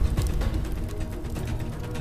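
Background music with a dense run of crackling clicks underneath and a steady low hum.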